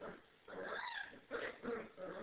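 Puppies vocalising as they play-wrestle: a high, wavering whine about half a second in, followed by a couple of short yips.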